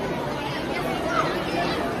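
Indistinct background chatter: several voices talking at once over a steady hum of noise.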